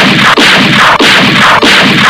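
Loud, rapid gunfire sound effects, shot after shot about twice a second without a break.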